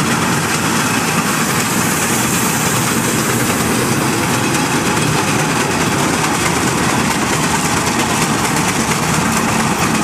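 Steam road locomotives working past in convoy, hauling a heavy load: a loud, steady mix of engine and running noise.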